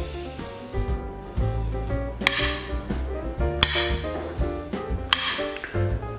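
Background music with a steady bass line, over which a table knife clinks three times on a ceramic plate, about a second and a half apart, as it cuts a peeled banana into pieces.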